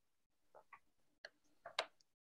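Near silence with a handful of faint, short clicks, the loudest one shortly before the end.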